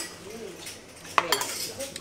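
A metal spoon clinking and scraping against china bowls and a plate as fried rice is served, with a few sharp clicks, one cluster about a second in.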